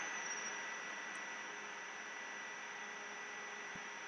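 Steady background hiss with a faint, thin high whine: the recording's microphone and room noise, with no other sound apart from one faint tick near the end.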